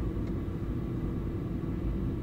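Car idling, heard inside the cabin: a low steady rumble with a faint steady hum.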